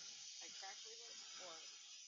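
Near silence: a faint steady hiss, with a faint voice in the background.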